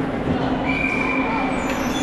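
Indoor ice rink during a hockey game: a steady low hum under skating noise, with a thin high squeal held for about a second starting just over half a second in.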